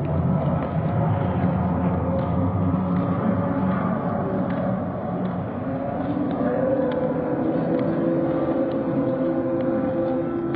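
Open-air stadium ambience: a steady low rumble, with a held tone coming in about six and a half seconds in and a second, lower one joining it about a second later.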